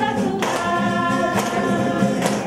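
A mixed group of women and men singing an Indonesian song in unison, accompanied by an acoustic guitar. Two sharp percussive hits, about a second apart, stand out over the singing.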